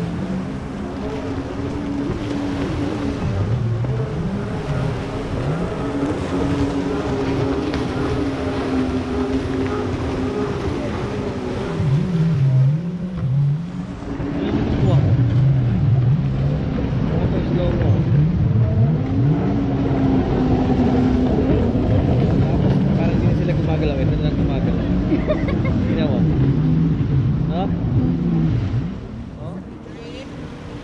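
Jet ski engines racing offshore, their pitch rising and falling again and again as the craft accelerate, turn and pass. The sound grows louder about halfway through and fades a little near the end.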